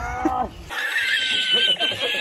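Edited-in meme clip of a man laughing in long, high-pitched squeals (the 'Risitas' laughing-man meme), starting just under a second in, right after a short bit of a man's speech.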